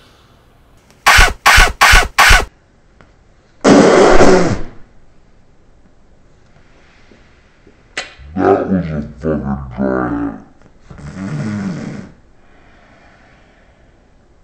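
A man coughing after a dry hit from a vape: four quick sharp coughs about a second in, a longer harsh cough a moment later, then a few seconds of hoarse voiced coughing and groaning. The dry hit is the sign of a coil running without enough e-liquid.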